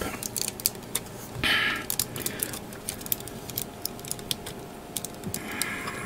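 Plastic parts of a Bandai Master Grade 1/100 Victory Gundam model kit clicking and tapping as they are handled and pressed together by hand: a run of small, irregular clicks.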